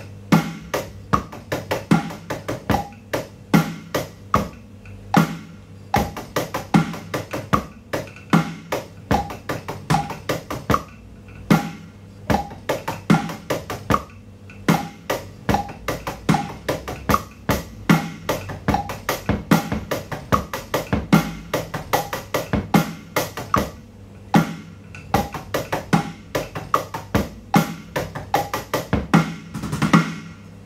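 Electronic drum kit playing a steady basic rock groove: bass drum on beats one and three and snare on two and four, while the hi-hat hand changes between quarter, eighth and sixteenth notes. The playing stops near the end.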